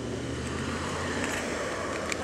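A car passing on the road, its noise swelling and then fading, over a steady low hum.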